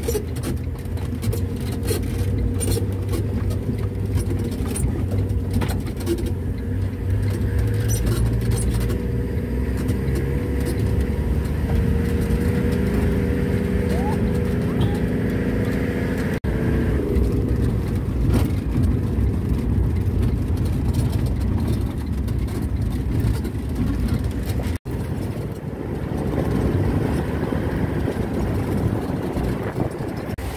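Vehicle engine and road noise heard from inside the cab while driving on a rough dirt road, a steady low engine drone with frequent small rattles and knocks. The sound breaks off briefly twice, about halfway through and again near the three-quarter mark.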